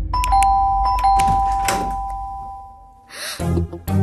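Electric doorbell ringing: a two-tone chime that starts as the switch is pressed and dies away over about three seconds, with film music underneath. The music comes back in strongly near the end.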